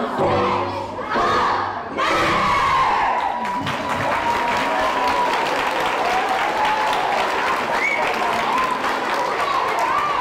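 A large group of children shouting and cheering together, rising suddenly about two seconds in, with music during the first two seconds.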